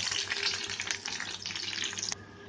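Green and dried red chillies, garlic and coriander seeds sizzling in hot oil in a steel kadai, with a steady hiss full of small crackling pops.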